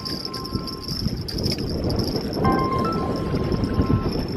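Mobile phone ringtone: a short tune of steady beeping tones that stops about a second in and starts again after a pause of over a second, with wind rumbling on the microphone underneath.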